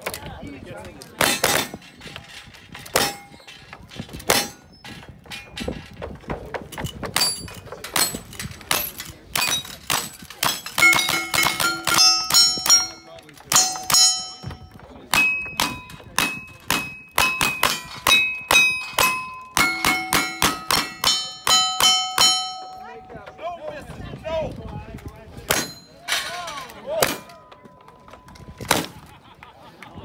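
Gunshots from two shooters firing in quick succession at steel targets. Many shots are followed by the ringing clang or ding of a struck steel plate. The shooting is densest in the middle and thins to a few shots near the end.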